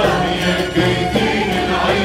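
Arabic orchestral music: a choir singing over bowed strings and the rest of the orchestra.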